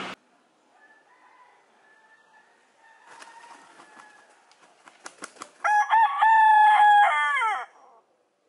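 A rooster beats its wings in a few quick claps, then crows once. The crow lasts about two seconds, holds a steady pitch, and drops off at the end.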